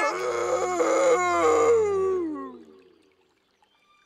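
A cartoon bear character's voice holding one long, loud call that falls in pitch and dies away about two and a half seconds in.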